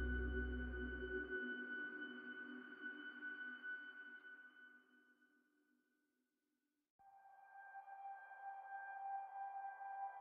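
Quiet relaxing instrumental music between pieces: a held chord rings on and fades away to silence about four seconds in. After a silent gap of a few seconds, a soft sustained tone swells in about seven seconds in.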